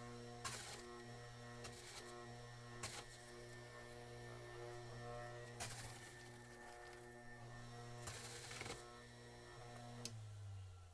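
Jack LaLanne's Power Juicer, a centrifugal electric juicer, running with a steady motor hum while thawed tomatoes are fed into it, with short bursts of grinding as each tomato is shredded: about half a second in, twice near two seconds, near three, near six, and a longer one around eight seconds.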